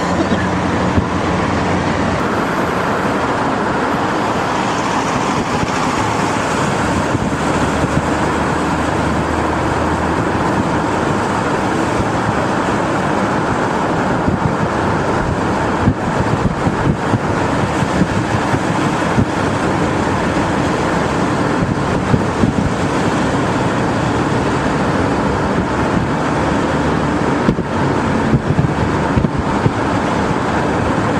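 Steady road noise inside a moving car at highway speed: tyre rumble, engine and wind rushing without a break, with small bumps in the second half.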